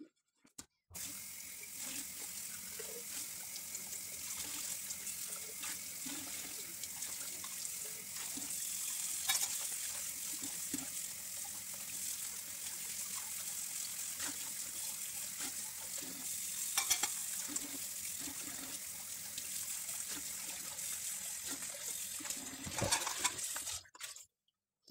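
Kitchen tap running steadily into a sink while dishes are washed by hand, with a few sharp knocks of dishware; the water comes on about a second in and stops just before the end.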